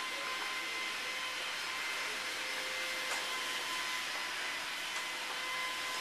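Steady rushing noise of a motor moving air, with faint, even, high whining tones; it does not change.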